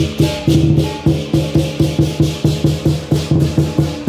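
Southern lion dance percussion, the big lion drum with gong and cymbals, playing a fast steady beat of about four strikes a second, the cymbals ringing over each stroke.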